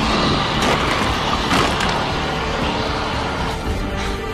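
A loud crash with crackling, splintering noise that starts suddenly and dies away over about three seconds, over dramatic music: the bridge being blown apart.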